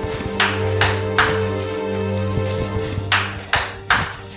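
Knocking on a door: three sharp knocks, a pause of about two seconds, then three more. Soft background music with a held low drone plays under it.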